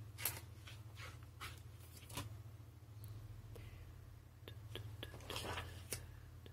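A sheet of a spiral-bound sketchbook being handled and turned: soft paper crinkles and clicks, then a longer rustle about five seconds in as the page comes over.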